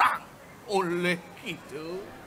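A stage performer's voice in stylised Balinese theatrical delivery: a held, drawn-out vocal sound about a second in, then a short rising call near the end.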